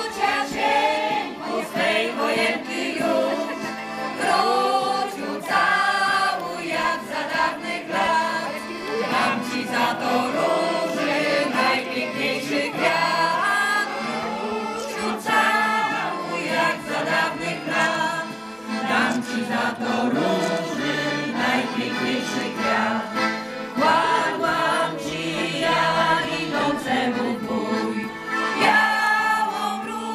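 A large choir of folk ensemble singers, mostly women's voices, singing a song together.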